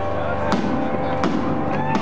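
Live heavy metal band: held keyboard and guitar notes broken by sharp drum and cymbal hits about half a second in, again a little later and near the end, as the full band begins to come in.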